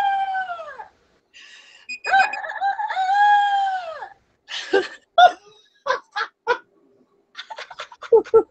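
A woman imitating a rooster's crow with her voice: a drawn-out call that falls away at its end, then a second long crow of about two seconds, followed by four short calls.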